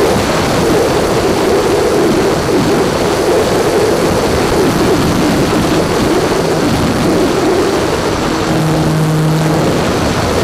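Electric motor and propeller of a small foam RC plane, picked up by a camera on the plane itself, buzzing over a rush of wind noise. Its pitch wavers with the throttle and settles into a steadier tone near the end.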